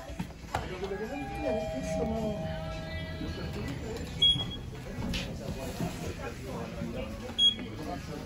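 Two short, high electronic beeps about three seconds apart, the second as a floor button on a Mitsubishi lift car's panel is lit, over shop background music and voices.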